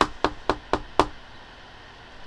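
Five quick, evenly spaced knocks on a hard surface, about four a second, in the first second.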